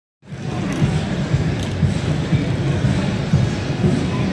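Steady low rumble of city street traffic, with a slow-rolling pickup truck among it.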